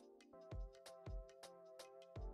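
Quiet background music with a beat and held chords.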